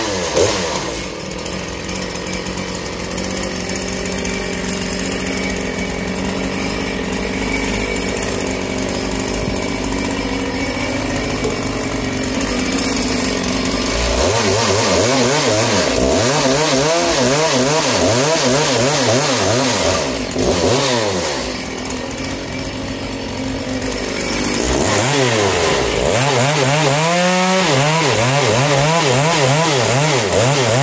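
Makita DCS 6400 two-stroke chainsaw, big-bored to 85cc with a 54 mm Hyway kit, running just after a cold start. For about fourteen seconds it holds a steady low speed. Then it is revved repeatedly, its pitch wavering up and down, and near the end it rises sharply to high revs.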